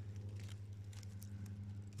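A low steady hum with a few faint scattered ticks.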